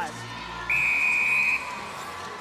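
Netball umpire's whistle: one steady, high blast lasting just under a second, about two-thirds of a second in. It signals the centre pass that restarts play.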